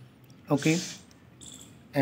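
Mostly speech: a man's single spoken 'okay' about half a second in. Otherwise quiet room tone, with a faint high-pitched chirping shortly before the end.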